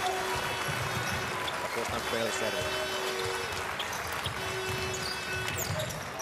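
Indoor basketball game in play: the ball bounces on the hardwood court over steady crowd noise. A held note plays in the background about the first half, breaks off, and returns briefly near the end.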